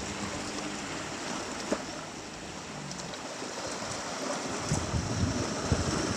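Small sea waves washing against shoreline rocks, a steady rushing noise, with a single sharp click about a second and a half in.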